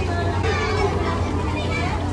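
Indistinct chatter of several people, children's voices among them, with no clear words, over a steady low hum.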